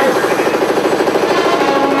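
A rapid, even, rattling pulse on a pitched tone, about fifteen beats a second, loud through a club's sound system.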